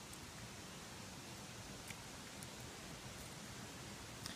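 Faint steady outdoor background hiss, with a few faint ticks.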